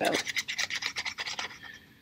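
Felt-tip marker scratching across the ridged rim of a paper plate in a quick run of short colouring strokes, trailing off near the end.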